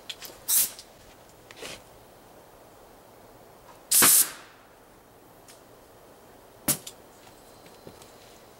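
A compressed-air launcher charged to about 120 psi firing a bamboo skewer into a black balloon about four seconds in: a short, loud blast of released air merged with the balloon's pop. Smaller sharp clicks come before it, and a single sharp click follows a few seconds later.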